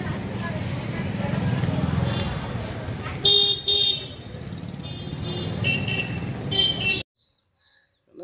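Street traffic noise with a vehicle horn: two loud short beeps a little over three seconds in, then a few weaker beeps around six seconds. The sound cuts off about a second before the end.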